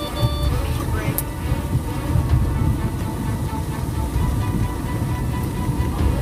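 Cockpit noise of an MD-82 airliner rolling out on a wet runway: a loud, steady low rumble, with a short electronic beep in the cockpit that stops about half a second in.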